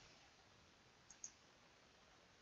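Near silence, broken about a second in by two quick, faint computer mouse clicks, as a node in a software tree menu is expanded.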